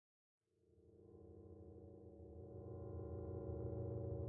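A steady electronic drone of several held low tones fades in after a moment of silence and slowly grows louder.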